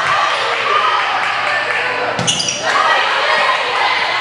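Volleyball rally in a gymnasium: the ball being struck, with players' and spectators' voices echoing around the hall and a sharp smack about two seconds in.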